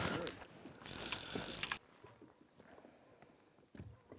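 Fly reel's click-and-pawl drag buzzing for about a second as a hooked trout pulls line off the spool, followed by a few faint clicks.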